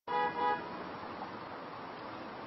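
A car horn sounds a short toot of about half a second, then steady street traffic noise.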